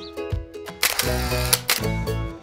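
Background music: plucked notes with quick decays, joined about a second in by fuller sustained chords over a bass line.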